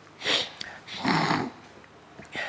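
A man weeping: two short sobbing, sniffling breaths about a second apart, the second with a choked catch of the voice.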